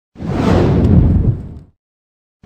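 A deep whoosh sound effect for an animated title logo: one rushing swell that builds quickly and fades away over about a second and a half.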